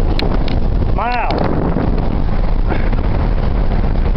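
Steady rumble of a vehicle driving over a gravel road, heard from inside the cab, with wind buffeting the microphone. A brief vocal sound about a second in.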